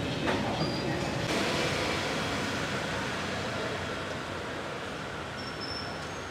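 Steady rumble of motorbike street traffic, with a couple of sharp knocks in the first second and a half from a knife striking a wooden chopping board.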